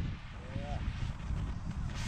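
Model rocket motor's rushing thrust fading away as the rocket climbs, over a low rumble of wind on the microphone.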